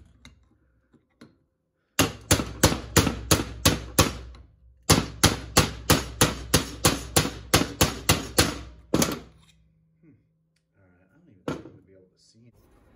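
A steel adjustable wrench used as a hammer, striking a fog machine's aluminium vaporizer block to pound a stuck part out. The blows come fast, about three a second, in two runs starting about two and about five seconds in, then a single blow near the end.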